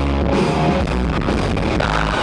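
Live rock band playing loudly: a Les Paul-style electric guitar over a drum kit, in an instrumental stretch without singing.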